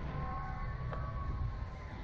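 Wind rumbling on the ride-mounted camera's microphone as the Slingshot ride capsule swings through the air, with a faint thin steady tone that rises slightly and sinks back.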